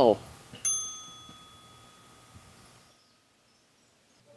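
A single bright ding of a small bell, struck once about half a second in and ringing out, fading over about two seconds.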